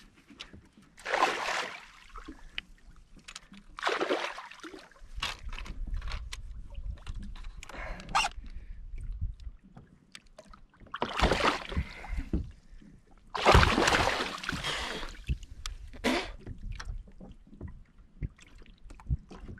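Water sloshing and splashing around a kayak in bursts of about a second each, the loudest about two-thirds of the way through, with a low rumble in the middle stretch.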